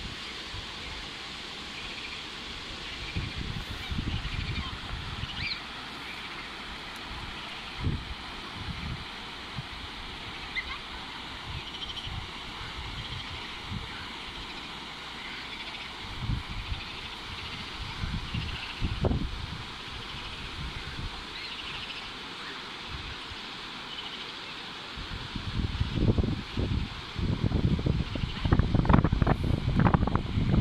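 Wind buffeting the microphone in irregular low gusts, heaviest over the last few seconds, over a steady outdoor hiss with a few faint bird chirps.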